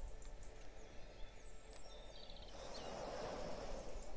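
Faint ambient track of birds singing, with a few short high chirps and whistles and a brief rapid trill in the middle, over a low wash of sea waves that swells toward the end.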